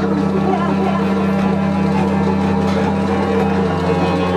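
A bowed double bass holds a low, steady drone while a clarinet sustains long tones over it, in free-improvised experimental jazz.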